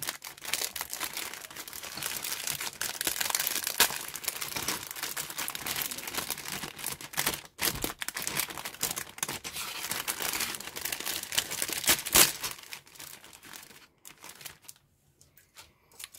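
Clear plastic bag crinkling and rustling as it is handled and opened and a plastic model-kit sprue is pulled out of it. The crinkling dies away about three-quarters of the way through, leaving only faint handling sounds.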